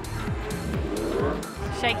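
Racing superbikes going by at speed, several engine notes dropping in pitch one after another as they pass, under background music.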